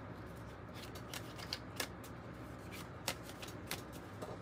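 A tarot deck being shuffled by hand: quiet, scattered flicks and taps of cards against each other, with a couple of sharper snaps about two and three seconds in.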